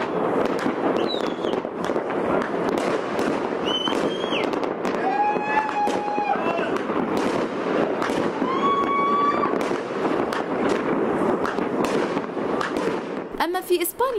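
Many fireworks bursting and crackling without a break, a dense run of bangs and pops, with people's voices crying out now and then over them.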